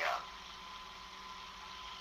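A brief spoken "uh" at the very start, then a pause filled only by the recording's low, steady background hiss with a faint steady hum.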